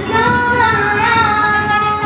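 A woman singing with music, her melody bending between notes and settling into a long held note in the second half.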